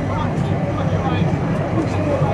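Indistinct spectator chatter over a steady low rumble from the approaching Airbus A340-600's four Rolls-Royce Trent 500 jet engines.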